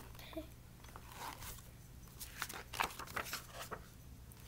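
Paper pages of a picture book rustling and crinkling as the book is handled and turned around, a run of short crackles and clicks.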